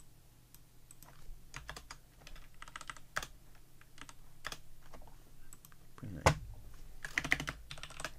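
Typing on a computer keyboard: irregular keystrokes and clicks, with one sharper key strike about six seconds in.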